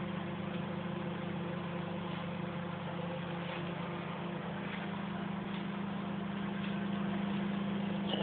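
A steady low machine hum that holds even, with no change in level or pitch.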